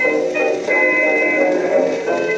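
A 1922 acoustically recorded dance orchestra playing from a spinning 78 rpm shellac disc on a turntable: sustained melody notes with a thin, narrow sound and no deep bass.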